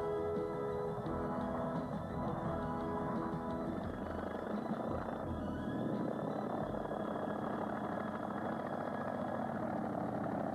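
Background music with held notes that stops about four seconds in, giving way to the steady noise of a Polikarpov I-16 fighter's Shvetsov nine-cylinder radial engine running as the aircraft taxis.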